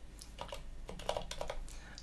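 Typing on a computer keyboard: a short run of quick key clicks as one short word is typed.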